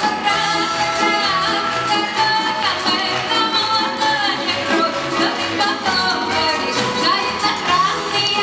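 A woman singing a folk-style song with vibrato on held notes, accompanied by an ensemble of Russian folk instruments (balalaikas, domra, guitar) over a steady beat.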